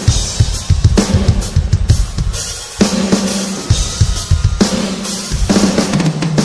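A rock band playing live in an instrumental stretch at the start of a song. The drum kit leads, with repeated bass drum and snare hits and cymbals, and the rest of the band plays underneath.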